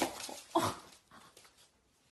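A French bulldog puppy making two short vocal sounds about half a second apart, then fainter sounds that fade out.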